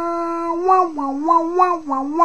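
A howl-like pitched sound: one note held steady at first, then wavering with quick dips and bends in pitch, about three a second.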